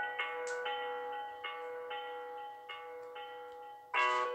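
Samsung Galaxy Ace 3 smartphone playing a simple melody fairly quietly as the audio of a fake incoming call. A new note comes about every half second over a held tone, and the music jumps much louder right at the end.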